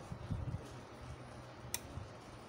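Low-frequency power inverter's transformer humming unevenly at first, then settling to a quieter steady hum, with one sharp click near the end, as its supply voltage is pulled below the low-voltage cutoff.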